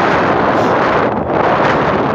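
Wind buffeting the microphone, a loud steady rush that thins briefly a little after a second in.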